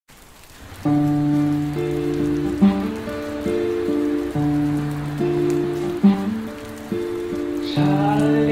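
Steel-string acoustic guitar, capoed, playing a slow fingerpicked intro of arpeggiated chords. It begins about a second in, with a new chord struck roughly every second.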